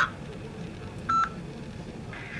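A single short phone keypad tone about a second in: the five key pressed on a mobile phone to accept an automated prison collect call.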